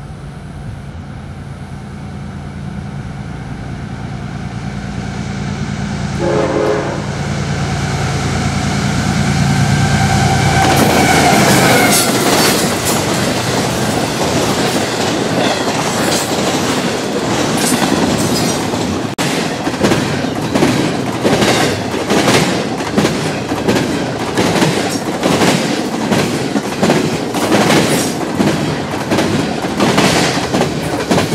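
CSX freight train approaching and passing. The rumble of its diesel locomotives builds over the first ten seconds, with a brief horn note about six seconds in and another around eleven seconds as the lead units go by. Then the double-stack cars roll past with a regular clacking of the wheels over the rail joints.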